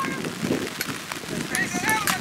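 Faint voices of spectators and players calling out across an outdoor sports field, with a few short, sharp knocks in the second half.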